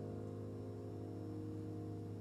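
A held grand-piano chord ringing on and slowly fading, with no new notes struck.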